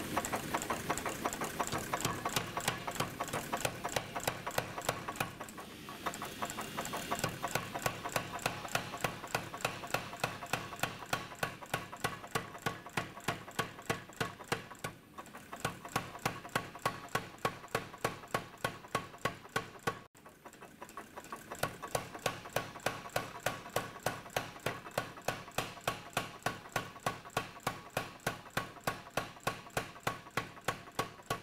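Big Blu Max 110 air power hammer striking red-hot blade steel in a fast, steady rhythm of about three and a half blows a second, spreading the blade wider. The blows stop briefly about 20 seconds in, then resume.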